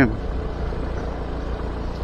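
Motor scooter being ridden at a steady speed: a steady low engine rumble under an even road-and-wind noise.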